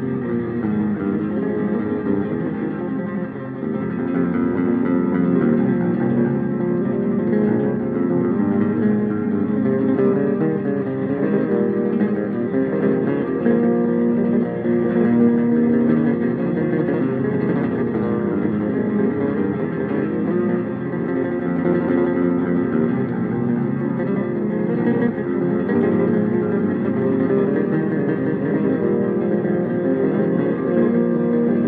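Electric bass guitar played through effects pedals: layered, sustained bass notes forming a continuous dense texture at a steady level.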